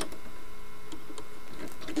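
A few faint, scattered clicks and taps as a soldering iron works among the wires and components inside a tube television chassis, over a steady background hum.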